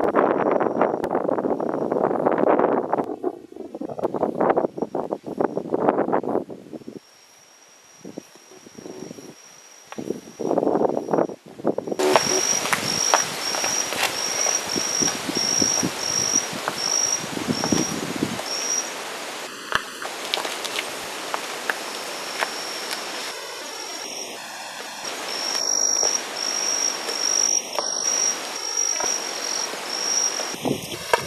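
Wind gusting on the microphone for the first several seconds, with another gust a little before the middle. From there on an insect sings a steady high-pitched pulsing trill over a faint outdoor hiss.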